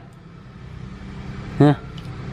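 A steady low background hum during a pause in a man's talk, then one short spoken word from him near the end.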